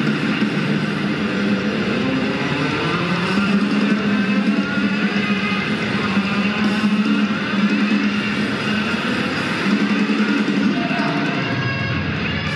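Electric guitar played through effects as a loud, dense wall of distorted sound over a sustained low drone, without breaks.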